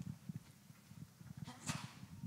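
Faint footsteps: a string of low, dull thumps, several a second, with a short breathy hiss near the end.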